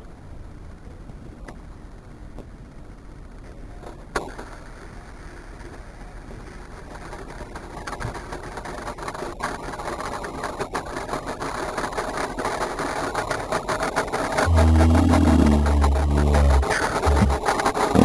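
Diet Coke bottle on a small toy car spraying out foam, a hiss with scattered clicks that builds over several seconds. A loud low rumble lasts about two seconds near the end.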